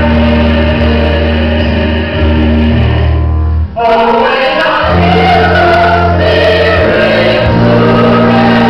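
Choir singing a Christian worship song over sustained low bass notes. There is a brief drop out a little before the halfway point.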